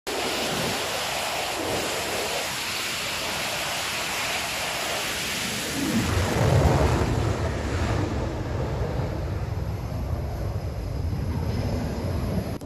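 Twin jet engines of an F/A-18 Super Hornet-family fighter running at full power on a carrier catapult. About six seconds in comes a louder, deeper roar as the jet is launched, fading slowly as it climbs away.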